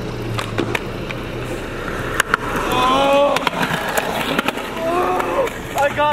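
Skateboard wheels rolling steadily over a concrete path, with a few sharp clacks of the board. Short shouted calls from a voice come in about halfway through and again near the end.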